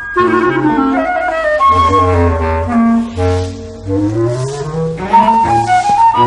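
Background music: a woodwind tune over a bass line. The melody runs downward over the first half, then climbs back up.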